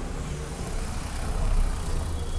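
A steady low rumble that swells briefly about one and a half seconds in.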